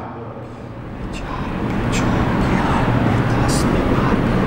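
Steady rumbling background noise with a low hum, growing louder from about a second in. A few short squeaks of a marker writing on a whiteboard are heard over it.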